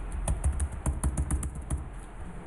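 Computer keyboard typing: a quick run of about a dozen keystrokes, typing a short command and pressing Enter repeatedly, stopping just before the end.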